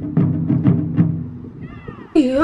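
Taiko drums beaten by a group of drummers: strong, ringing strikes about three to four a second, growing softer in the second half. A short gliding high-pitched call comes near the end.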